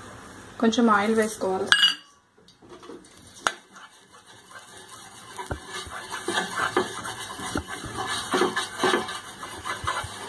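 Wooden spatula scraping and knocking around a frying pan as oil is spread over it, a quick run of short strokes that gets busier from about halfway through. A short spoken phrase comes near the start.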